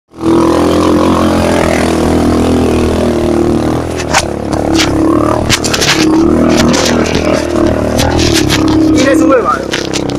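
Motorcycle engine running under load up a rough dirt track, its pitch rising and falling with the throttle, with sharp knocks and rattles from the bumps starting about four seconds in.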